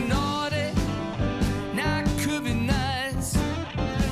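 A Christmas pop song: a voice singing a melody with vibrato over an instrumental backing.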